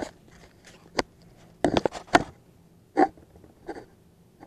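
A sharp click about a second in, then a few short scuffs and knocks close by.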